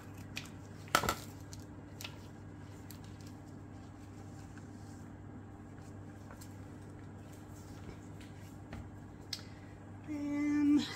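Light handling noises on a work surface: one sharp tap about a second in and a few fainter clicks, over a steady low hum.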